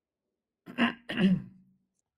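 A person clearing their throat in two short bursts, starting just under a second in.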